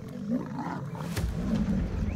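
Lion growling low, a little louder from about a second in.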